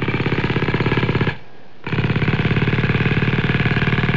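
An edited-in sound effect over a title card: a loud, rapid rattling buzz that breaks off for about half a second roughly a second and a half in, then carries on.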